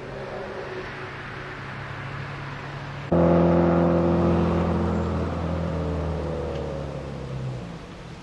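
A vehicle engine running steadily. About three seconds in, a louder engine sound begins abruptly and slowly fades away over the next few seconds.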